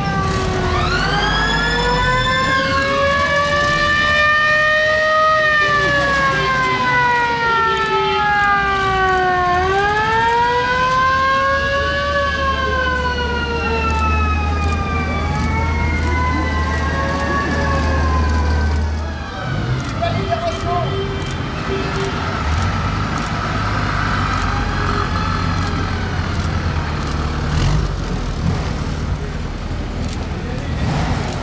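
Several sirens wailing together, each rising and falling slowly in pitch, then cutting out about two-thirds of the way through. Underneath, old military vehicle engines run at low speed, with a heavier engine drone as a truck passes.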